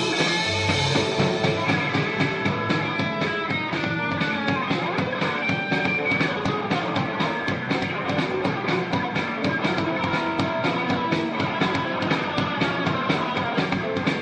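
Three-piece rock band of electric guitar, bass and drums playing an instrumental passage, with a fast, even drum beat.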